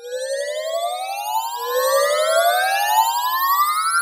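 Magic-wand sound effect: a fluttering, shimmering tone gliding steadily upward in pitch, with a second rising sweep joining about a second and a half in.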